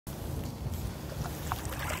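Kayak moving through calm water: a low steady rumble with a few small water drips and splashes in the second half.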